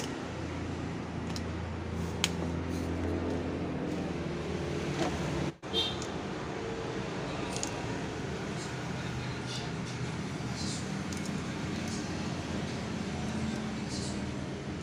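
Steady low hum of background noise, with a few faint short scrapes as a utility knife cuts into a laptop charger cable. The sound briefly drops out a little past the middle.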